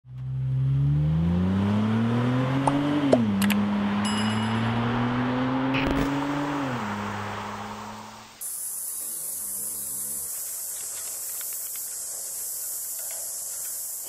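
Car engine accelerating hard: its pitch climbs, drops at a gear change about three seconds in, climbs again, then eases off and fades. A quieter, steady high hiss follows.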